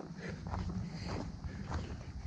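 Footsteps on a dry dirt bush track strewn with leaf litter and twigs, a few steps a second, over a low rumble of wind on the microphone.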